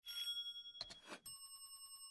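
Notification-bell sound effect of a subscribe-button animation. A bright bell tone rings for just under a second, a couple of short clicks and a swish follow, then a second, slightly lower bell tone rings.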